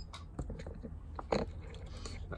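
A few faint clicks and small scraping crackles as a copper spot-welder probe is lifted off an 18650 cell's terminal and fuse wire just after a weld.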